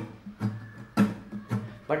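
Acoustic guitar strummed in a short rhythmic pattern: about six strokes, mostly light brushes with one much louder accented stroke about a second in. The light strokes fill the 'miss' beats of the strumming pattern, and the loud one is the accent.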